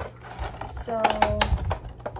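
Pencils being handled and knocked together while being gathered to go into a fabric pencil case: a quick run of small clicks and rustles.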